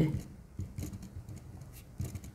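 Faint scratching of a pen writing on paper in short, uneven strokes.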